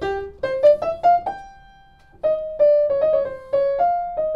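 Feurich 122 upright piano played as a single-note melody just above middle C: a short rising run ends on a held note that dies away, then after a brief pause a run of notes steps back down.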